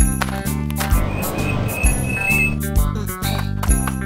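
Children's cartoon background music with a steady beat.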